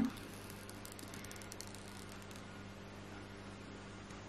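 Faint, soft crackle of the paper protective film being peeled off a new iPhone's screen, the ticks mostly in the first second and a half, over a steady low hum.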